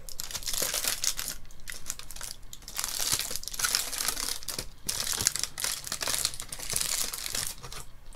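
Aluminium foil wrapper crinkling and rustling as it is peeled open and unfolded from a wedge of cheese, in crackly bursts with a couple of brief pauses.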